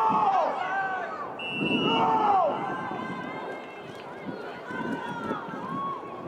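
Voices shouting across an outdoor soccer field: two loud calls, one at the start and one about two seconds in, followed by fainter calls.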